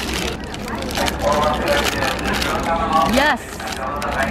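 Paper bag crinkling and rustling as it is opened by hand, with voices talking over it and a steady low rumble underneath.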